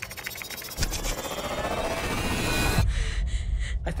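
Horror-trailer sound design: after a few keyboard clicks, a loud noisy swell builds for about two seconds and cuts off suddenly, leaving a low rumble underneath.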